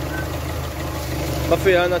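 Renault Symbol 1.2 petrol engine idling steadily with an even low hum.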